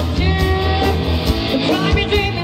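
Live rock band playing loudly: a woman singing lead over electric guitars, bass guitar and drums.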